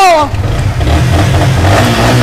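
Sport motorcycle engine running and being revved, the pitch climbing near the end.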